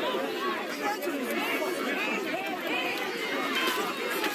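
Many voices of a crowd talking and calling out over one another at a steady level, with no single voice standing out.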